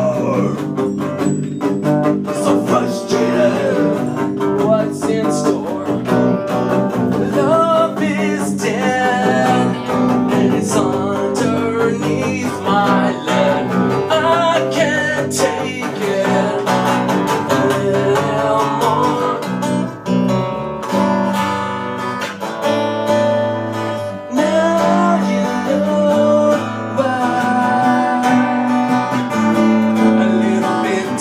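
Acoustic guitar and electric bass playing a blues-rock song live.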